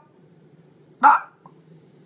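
A dog barks once, short and sharp, about a second in.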